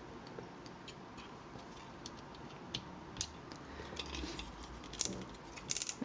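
Faint, irregular clicks and ticks of the plastic parts and joints of a Mastermind Creations R-02 Talon transforming figure as it is handled and its legs and claws are folded into place, about a dozen scattered clicks with one a little louder near the middle.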